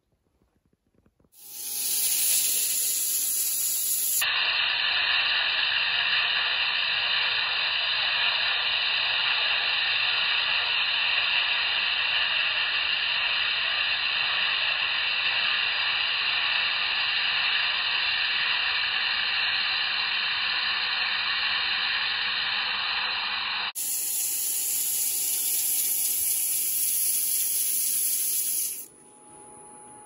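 Hand sanding of an ash table leg spinning on a wood lathe: a steady hiss of abrasive on the turning wood that starts about a second and a half in and stops near the end. The long middle stretch is slowed to quarter speed and sounds lower and duller.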